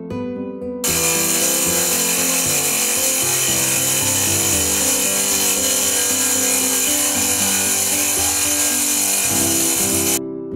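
Water-cooled bridge tile saw cutting through a decorative stone slab: a loud, steady, hissing grind that cuts in suddenly about a second in and stops abruptly at the end. Soft guitar music plays underneath.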